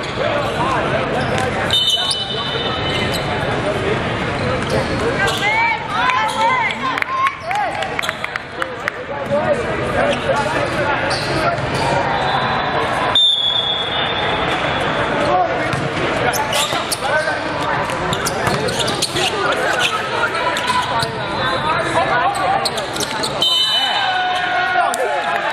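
Indoor volleyball in a large hall: constant babble of players' and spectators' voices, sharp thuds of the ball being struck, and three short referee's whistle blasts, about two seconds in, just past the middle, and near the end.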